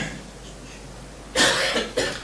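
A single short cough, loud and close, about a second and a half in, after a brief pause with only faint room noise.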